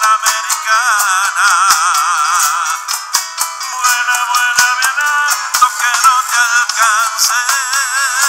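Live band playing an instrumental passage between sung lines: a wavering lead melody over strummed acoustic guitar and frequent percussion hits. The low end is missing, so the mix sounds thin.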